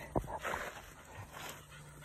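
Faint sounds of a wet retriever moving close by: a short click and a brief rustle in the first second, then quiet.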